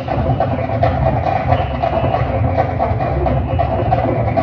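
High school marching band playing, with drums.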